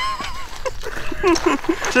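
A man laughing in a run of short repeated bursts, between bits of speech.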